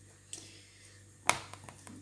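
A small knife clicking against the hard work surface as it is set down: one sharp click a little past halfway, with a few faint ticks around it.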